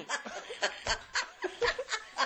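A woman laughing hard in a string of short bursts, about four a second.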